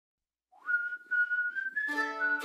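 A whistled tune opening a music track: one note slides up, is held with short breaks and edges a little higher. Instrument chords come in just before the end.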